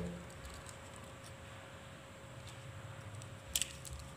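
Faint handling noise as a plastic handheld microphone body and its wired capsule are turned over in the hands, with a short cluster of clicks about three and a half seconds in.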